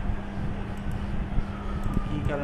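Steady background noise with a low, even hum and a few faint clicks.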